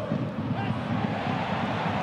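Steady din of a large football stadium crowd, a continuous wash of noise without distinct shouts or chants standing out.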